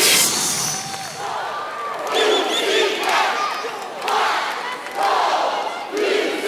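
Cheerleading squad yelling a cheer in unison, one shouted phrase about every second from about two seconds in, over arena crowd noise. The dance music cuts off at the very start.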